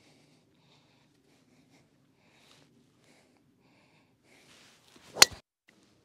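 Golf driver striking a teed ball: a brief swish of the club just before one sharp, loud crack of impact, about five seconds in, after a quiet address.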